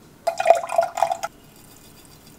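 Sesame oil poured in a stream into a glass measuring jug that already holds dark liquid, splashing into it for about a second.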